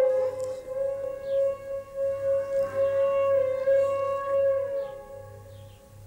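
Background music: one long held melodic instrument note with a slight waver, stepping down to a lower note and fading near the end.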